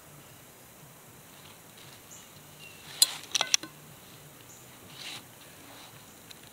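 A few sharp light clicks of a metal fork and a knife being picked up and set down by a plate, bunched about three seconds in, over quiet outdoor background.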